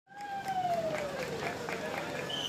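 A person's voice calling out in one long falling note, over a run of short sharp clicks about four a second.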